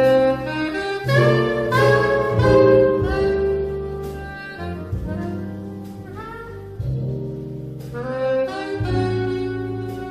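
Soprano saxophone playing a jazz melody of held, sustained notes over a big band's soft low chordal accompaniment.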